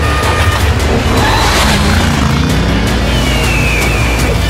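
Film soundtrack of action music mixed with motorbike engine sound effects revving. A high falling squeal, like tyres skidding, comes near the end.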